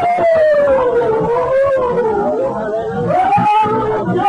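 A singing voice holding one long, wavering note that sinks slowly and then rises again near the end, part of a slow altar-call hymn.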